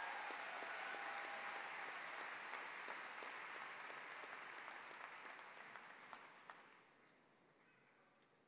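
Audience applauding after a speech, a steady clatter of many hands that dies away about seven seconds in.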